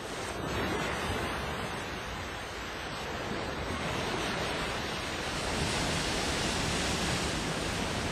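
Ocean surf: a steady rushing of waves, swelling gradually louder, as a recorded sound effect opening an album track.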